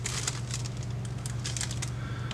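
Light clicks and rattles of a plastic model-kit sprue sheet being handled and picked up, a scatter of small ticks, over a steady low hum.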